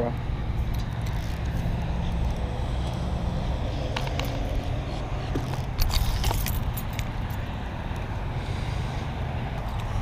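Steady low rumble of road traffic, with a few short splashes and clatters about four and six seconds in from a hooked peacock bass thrashing at the surface near the bank.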